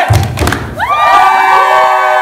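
A heavy thump, then a group of teenagers cheering together in one long held shout from about a second in.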